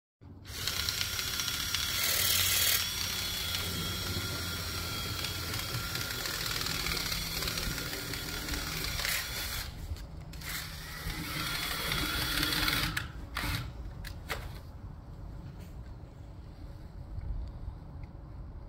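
Cordless drill spinning a rotary dryer-vent cleaning brush on flexible rods inside the dryer vent duct to clear out lint. The motor whines steadily with the rods and brush scraping in the duct, then stops about 13 seconds in after a couple of short bursts, leaving quieter handling noise.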